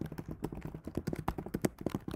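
Typing on a computer keyboard: a quick, irregular run of keystroke clicks, several a second, as a terminal command is entered.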